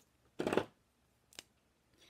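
Brief rustle of card stock and craft supplies being handled on the table, followed by a single light click about a second later.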